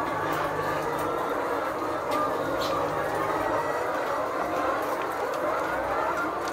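Steady background chatter of a large flock of laying hens in cages: many overlapping clucks and calls, with a few faint clicks.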